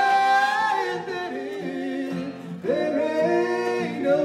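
A man and a woman singing a country-bluegrass song together in harmony over a strummed acoustic guitar. A long held note opens it, and a new sung line begins near the end.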